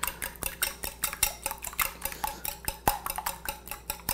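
Wire whisk beating raw eggs in a ceramic bowl: a fast, uneven run of clicks as the wires strike the bowl's sides, several a second. The eggs are being lightly scrambled to break up the whites and yolks.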